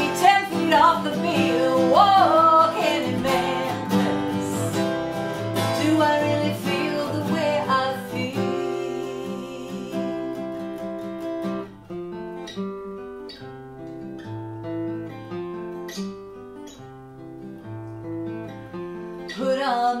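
Acoustic guitar playing with a woman singing over it for the first eight seconds or so; then the guitar carries on alone, softer, in separate picked notes, until the voice comes back right at the end.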